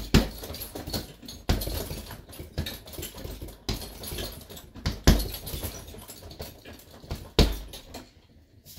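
Bare-knuckle punches hitting a hanging heavy bag in irregular combinations, with a few heavy blows and lighter ones between. The bag's chain is loose at the top, so it jingles after the hits.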